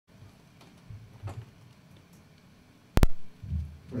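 Microphone handling noise: a handheld microphone taken up, giving one sharp loud thump about three seconds in and a brief low rumble after it, with a few faint low knocks before.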